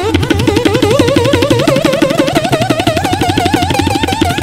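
Siddha veena, an Indian slide guitar, playing a fast passage in raga Yaman Kalyan. The slide makes a wide, rapid vibrato on a melody line that climbs gradually in pitch, over quick, even strokes on the strings. Tabla accompanies underneath.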